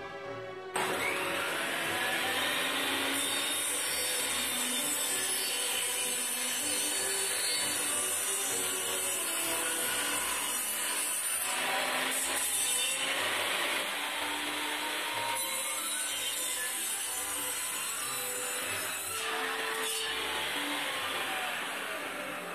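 Table saw running and ripping a block of pine, the cutting noise starting abruptly about a second in and holding steady, easing slightly about two-thirds of the way through.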